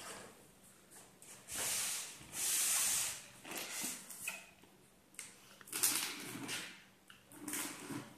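Packing tape on a cardboard box being cut open with a blade: a run of rasping strokes of noise. The two longest and loudest come between about one and a half and three seconds in, followed by shorter ones.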